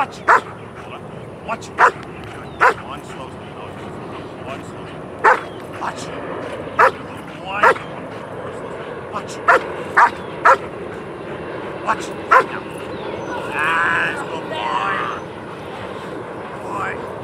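A large black shepherd-type protection dog barking at a helper in a bite suit while held back on a leash, in short sharp single barks at uneven intervals of about half a second to two seconds. This is a threat display held under control, not a send to bite.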